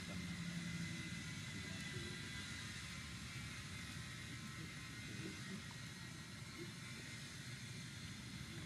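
Steady low outdoor rumble, like distant traffic or wind, with a faint steady high tone above it and a short low hum in the first second.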